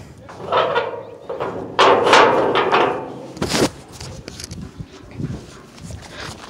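A rusty steel door being worked open, scraping and rattling twice, then a single sharp metal clank about three and a half seconds in, followed by a few lighter knocks.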